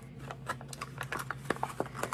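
Packaging being handled: a series of small clicks, scrapes and rustles as a Funko Pop pin's flocked plastic insert is slid out of its cardboard box.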